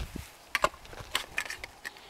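A few faint, short clicks and knocks at irregular intervals: handling noise from a PVC potato cannon being held and shifted in the hands.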